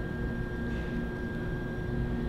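Room tone in a pause between words: a steady low rumble with a faint constant electrical hum, and no distinct event.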